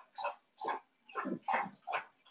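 A woman laughing in short, breathy bursts, about five in two seconds, with brief gaps between them.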